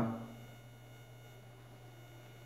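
A spoken word trails off at the very start. After that there is only a faint, steady low hum with a few thin, steady high tones behind it: electrical background hum in the room tone.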